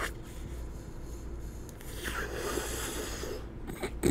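A man drawing a long, hissing inhale of smoke, starting about two seconds in and lasting about a second and a half, over a low steady hum.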